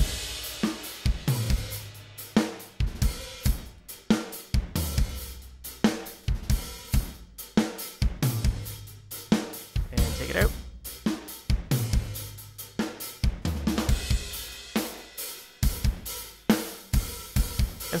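A rock drum kit played back from a multitrack recording: kick, snare and cymbals in a heavy beat. The snare is layered with a clean sample of the same drum, giving a consistent sample of the snare on every hit.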